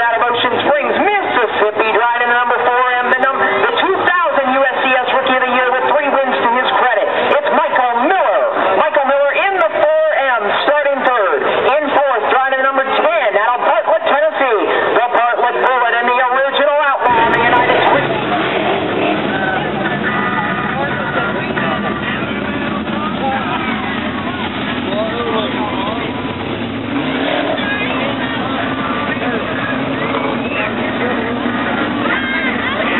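A solo voice singing long, wavering notes for about the first half. Then, after a sudden cut, a group of sprint car engines runs steadily on the dirt track.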